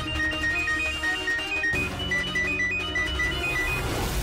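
A strange phone ringtone: a melody of short, high beeping notes hopping between two pitches, played as two repeated phrases over low, sustained dramatic background music.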